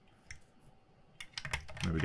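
Quiet workbench with a faint click, then a quick run of sharp small clicks in the last second, followed by a man starting to speak at the very end.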